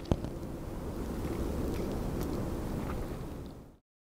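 Steady low outdoor background rumble, with a sharp click right at the start and a couple of faint ticks, fading out just before the end.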